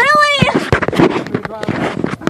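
A brief high-pitched laugh at the start, followed by rustling and small knocks as the phone is handled and moved around.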